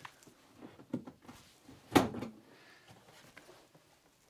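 ENKI AMG-2 XL guitar case being handled: scattered light knocks and rubbing, with two firmer knocks about one and two seconds in, the second the loudest.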